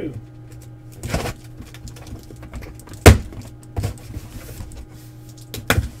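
Sealed cardboard shipping case being cut open along its packing tape and its flaps pulled back by hand: a few short scrapes and knocks, the loudest a sharp crack about three seconds in.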